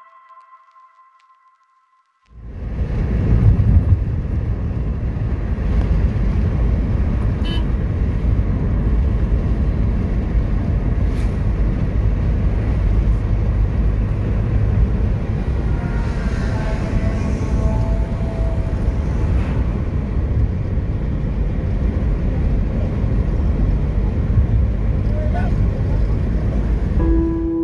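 Steady rumbling road and wind noise from a moving car, starting about two seconds in after a short silence. A faint pitched sound comes through about two-thirds of the way in.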